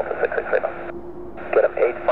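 Air traffic control radio chatter: clipped, narrow-band voices over the airband radio, with a short break between transmissions about a second in.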